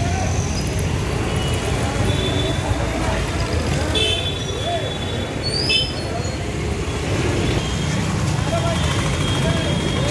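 Busy street noise: a steady rumble of motorbikes and traffic under a crowd of scattered voices, with short vehicle horn toots about four seconds in and again near the end.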